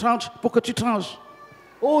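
A man's voice speaking with a wavering, drawn-out pitch. It is followed by a short pause, then an "Oh" near the end.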